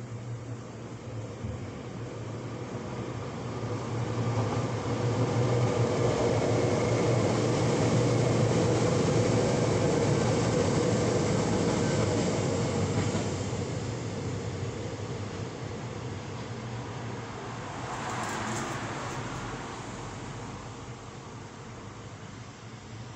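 A vehicle passing by: a steady mechanical rumble swells up a few seconds in, stays loud for several seconds and fades away, with a smaller brief rise near the end.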